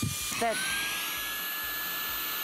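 Shark WandVac cordless handheld vacuum switched to run: its motor spins up with a rising whine about half a second in, then runs steadily at a high pitch with a rush of air.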